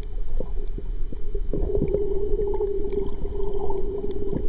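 Underwater sound picked up by a submerged waterproof camera: a muffled low rumble with scattered sharp clicks and crackles. A steady hum sits underneath and grows louder from about a second and a half in.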